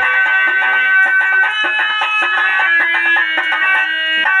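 Amplified harmonium playing a quick melody of held, reedy notes. A drum beat drops out within the first half-second, leaving the harmonium alone.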